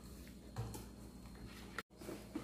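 Faint, light ticking and scraping of a wire whisk stirring thick cassava cake batter in a stainless steel bowl. The sound cuts out for a moment near the end.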